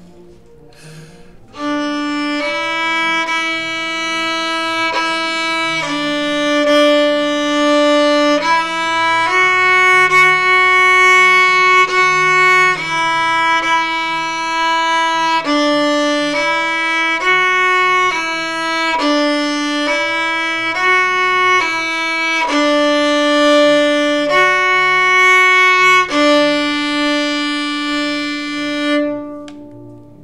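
Solo violin playing a slow, smooth bowed melody of long held notes in its low register, with a few quicker notes in the middle. It starts about a second and a half in and dies away near the end.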